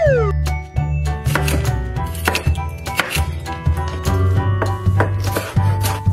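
Knife cutting through a slice of watermelon on a wooden board: several sharp chops, over background music with a steady bass.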